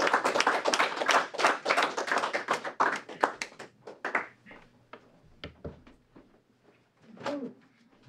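Small audience applauding in a small room, the claps thinning out and dying away about five seconds in; a short sound near the end.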